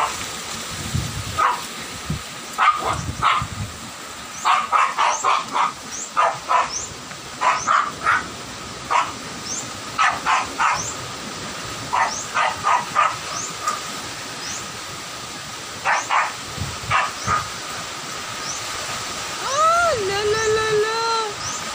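A dog barking repeatedly in clusters of short barks, over the steady rush of strong wind and rain.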